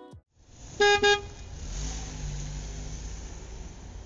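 A vehicle horn gives two short toots close together about a second in, followed by a steady low rumble of traffic.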